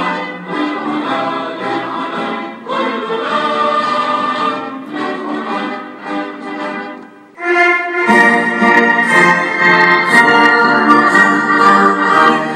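A national anthem played by an orchestra. About seven seconds in the music dips briefly, then comes back louder and fuller.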